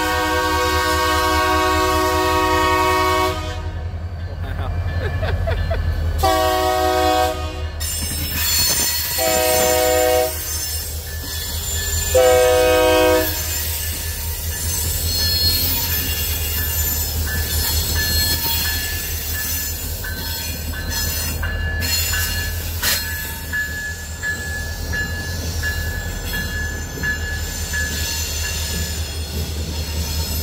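Diesel locomotive air horn sounding four blasts in the grade-crossing pattern, long, long, short, long, over the steady rumble of the two EMD units' diesel engines. After the horn, the wheels squeal in thin high tones as the locomotives and the following cars roll past.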